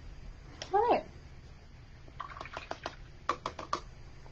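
A short pitched call that rises then falls, followed about a second later by a quick run of light clicks and knocks as a canvas board is handled and shifted on a wooden easel shelf.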